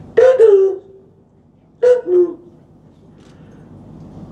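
A man's voice through a microphone making two short, garbled vocal sounds, each falling in pitch, an imitation of an echoing, unintelligible old railway station tannoy announcement.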